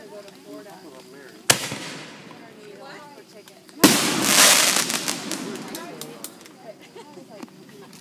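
Aerial fireworks: a sharp bang about a second and a half in, then a louder burst about two seconds later that trails into about two seconds of crackling as the shell's sparks spread.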